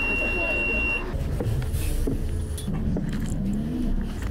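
A bus fare-card validator gives one steady high beep, about a second long, as a student travel card is held to it and read. After it comes the low, steady rumble of the bus running.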